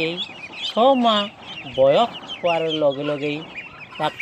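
Farmyard poultry calling: a constant scatter of quick high-pitched peeps, with several louder, lower calls that rise and fall in pitch.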